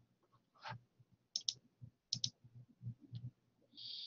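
Faint computer clicks from advancing presentation slides, a few of them in quick pairs.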